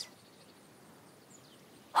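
Near-silent pause: quiet room tone, with a faint high chirp about one and a half seconds in.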